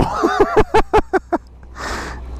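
A man laughing in a quick run of short voiced bursts, followed near the end by a sharp breath in.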